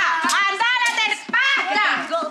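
Several voices singing and shouting loudly over hand-drum beats and clapping, a lively group sing-along.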